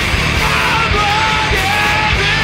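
Punk band playing live and loud in a small room: distorted electric guitars, bass guitar and drums. A higher melodic line comes in about half a second in.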